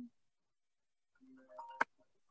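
A short, faint tone rising in steps, then a single sharp click near the end: a computer mouse clicking a menu open.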